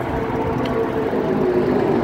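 Traffic noise from a busy main road: a steady rush of tyres and engines, with one vehicle's engine note slowly falling in pitch as it passes.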